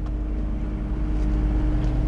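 An 8,000-watt Onan Quiet Diesel generator on a motorhome running, a steady low drone with an even hum.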